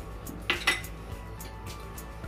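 Two sharp clinks about a fifth of a second apart, about half a second in: a dish or utensil knocking against a bowl.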